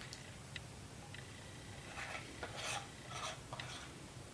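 A small metal beard balm tin being picked up and its lid worked open: faint scraping of metal on metal with a few light clicks.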